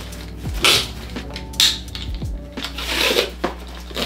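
Compression straps inside a soft-sided Calpak Luka carry-on being pulled tight and fastened over packed clothes. There are three short pulls of webbing through the buckles, with fabric rustling in between.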